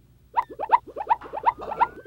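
Cartoon-style transition sound effect: a quick run of short rising chirps, about seven a second, starting a third of a second in.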